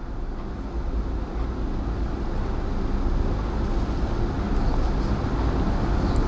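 Steady low rumbling background noise that slowly grows louder, with no distinct events.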